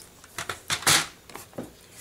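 Handling noise from card stock and a plastic paper trimmer being moved about on a table: a few light clicks and short papery rustles, the loudest just under a second in.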